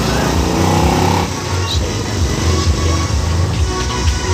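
Bass-heavy recorded music played back through a mixer into a small speaker system. A rising whine climbs over the first second and stops abruptly, and a strong bass line pulses throughout.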